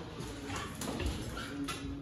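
A few light, separate taps and clicks over quiet room noise.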